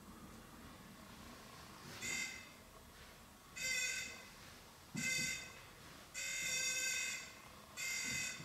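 Handheld ghost-hunting detector with an antenna giving short buzzing alert tones, five bursts at uneven intervals, the fourth the longest at about a second. Each burst is the meter registering a hit, which the investigator takes for a spirit touching or nearing it.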